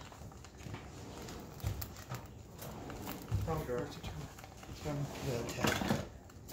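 Eggs frying in a nonstick pan with a steady sizzle. A few light knocks come about two seconds in, and a voice speaks briefly twice in the second half.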